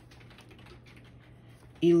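Faint, irregular light clicks and ticks of small paper word cards being handled and picked from a pile, until a voice begins near the end.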